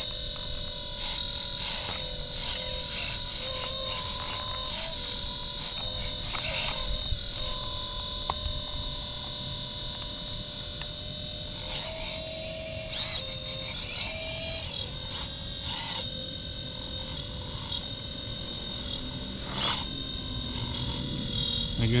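Hydraulic pump of a 1/12-scale metal RC excavator whining steadily as the boom, arm and bucket work. Its pitch rises under load between about 12 and 15 seconds in. Scraping and tearing sounds come through as the bucket rips grass roots and soil out.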